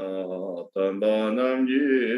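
A man chanting a Buddhist prayer in a sustained, melodic recitation voice, with a brief pause for breath just under a second in.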